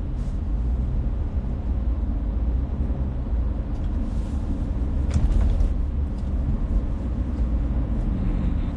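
Car cabin noise while driving: a steady low rumble of road and engine noise heard from inside the car, with a few faint ticks midway.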